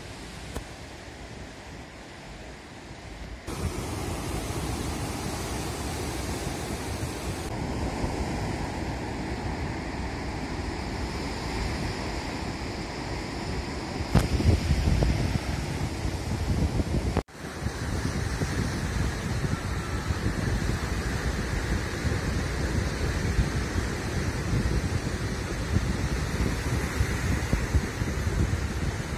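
Steady wash of ocean surf breaking on a sandy beach, mixed with wind rumbling on the microphone. The sound jumps abruptly a few times where the footage is cut, with a louder gusty stretch past the middle.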